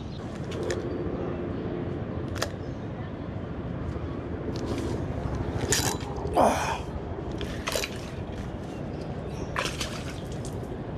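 Body-mounted microphone picking up clothing rustle, brush and footsteps as an angler climbs down rocks at the water's edge holding his rod, under a steady rumble, with scattered sharp clicks. A louder noisy burst comes just past halfway.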